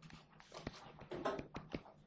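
Faint, irregular ticks and soft scratches of a stylus writing on a tablet screen.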